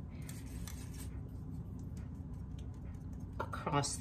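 A metal spoon scraping and pressing lumps of powdered sugar through a fine-mesh strainer: faint, irregular scratching over a steady low hum.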